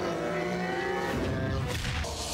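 Sound effects from the animated episode's soundtrack: a steady, pitched droning sound that holds for most of two seconds and stops shortly before the end.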